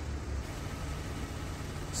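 Steady low outdoor rumble, with wind buffeting the microphone, a little stronger in the first half second.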